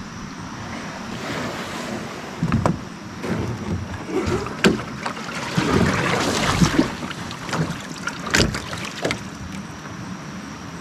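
A canoe being handled in shallow water and mud: a few sharp knocks against the hull and gear, with splashing and sloshing that is loudest about six seconds in.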